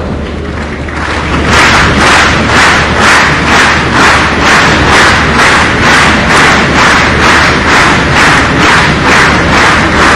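A large audience clapping together in a steady rhythm of about two claps a second, which starts about a second and a half in and follows a quieter murmur.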